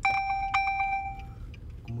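A bright chime rings out suddenly, struck again about half a second in, and fades over about a second and a half, over the low steady rumble of a moving car.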